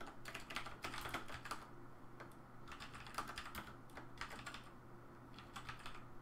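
Typing on a computer keyboard in bursts of quick keystrokes, broken by two short pauses of about a second.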